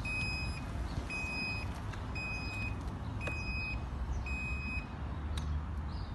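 Reverse-warning beeper of an Eleksa E-Rider electric mobility scooter sounding while it backs up: a high-pitched beep about half a second long, five times at about one a second, stopping about five seconds in. A steady low rumble runs beneath.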